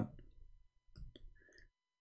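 Faint clicking at a computer, a few quick clicks about a second in.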